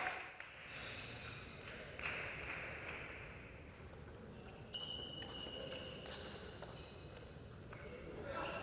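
Table tennis ball being played in a rally: scattered sharp clicks of the celluloid-type plastic ball striking bats and the table. A brief high squeak comes about five seconds in.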